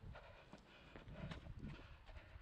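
Quiet running footsteps on a paved path: a series of sharp footfalls from running shoes.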